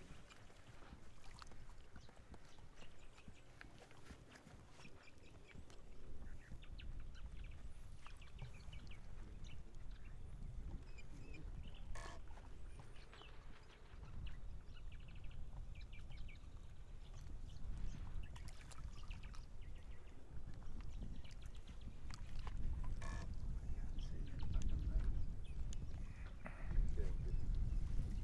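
Wind rumbling on the microphone, growing louder over the last few seconds, with faint distant voices and small scattered sounds above it.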